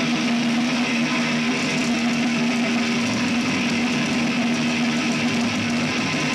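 Thrash metal band playing live, dominated by heavily distorted electric guitars in a dense, steady wall of sound with one low note held through. The sound is loud and saturated, as recorded from the crowd.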